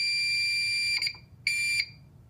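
Simplex 4051 fire alarm horn sounding a steady, high tone. It cuts off about a second in, gives one short blast, then stops as the panel's signal silence takes effect.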